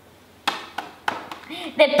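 A few sharp clicks and crackles of a plastic cherry-tomato punnet being handled. A child's voice starts near the end.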